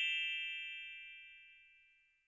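A bell-like ding sound effect from a subscribe-button animation, struck once and dying away over about a second and a half.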